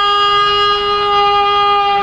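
A long, loud parade-ground call held at one steady pitch for about three seconds, breaking off just after the end.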